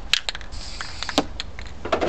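A few sharp, irregular clicks and knocks of spray paint cans being handled, over a low steady background rumble.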